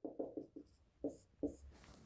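Dry-erase marker writing on a whiteboard, faint: a quick run of short strokes, then two separate strokes about a second in.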